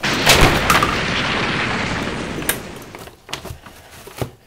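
A sudden loud blast like an explosion, with a few sharp cracks in its first second, that fades away over about three seconds.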